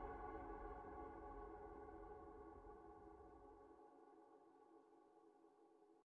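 Ambient synth-pad background music holding a sustained chord and fading out steadily; its low rumble drops away about four seconds in, leaving only the faint held tones at the end.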